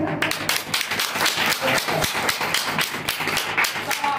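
A small group of people clapping, a quick irregular patter of hand claps that starts just after the speech ends and runs until the next speaker begins.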